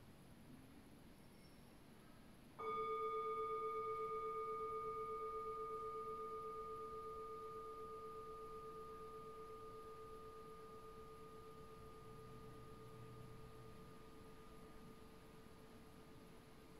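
Small singing bowl struck once, about two and a half seconds in, ringing with a slight wavering beat and slowly fading away.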